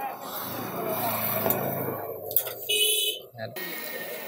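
A person's voice murmuring indistinctly, with a short high-pitched tone a little under three seconds in.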